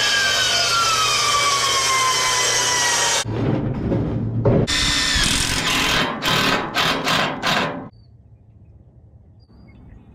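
A DeWalt miter saw runs and cuts through a board, its whine sinking in pitch over about three seconds. Then a DeWalt 20V cordless impact driver drives screws into wooden deck boards in several short bursts, which stop about eight seconds in.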